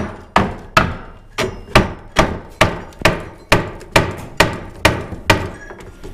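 Rubber mallet tapping on the wooden frame of an antique display cabinet: about fifteen evenly spaced knocks, two to three a second. The knocks are driving apart a joint held by finishing nails.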